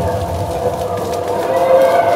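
Yosakoi dance music playing loud over loudspeakers, here a stretch of held, slightly wavering tones between phrases.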